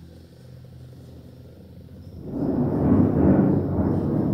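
A faint steady hum, then a low noise with no clear pitch that swells up about two seconds in and carries on to the end.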